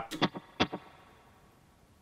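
Clean electric guitar through a Chase Bliss Tonal Recall analog delay set to a short slapback echo: a couple of brief picked notes in the first second, each followed by a quick repeat, dying away to quiet.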